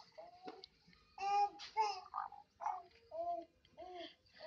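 Baby babbling in a string of short, pitched syllables, about two a second, loudest a little over a second in.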